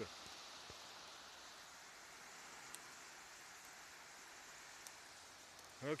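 Faint, steady wash of wind and small waves along a sandy shoreline, with a few light ticks.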